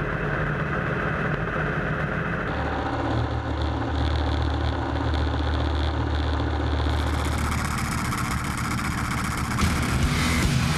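Street-race car engine idling at the starting line, heard from inside the caged cockpit. The steady low rumble grows stronger about two and a half seconds in.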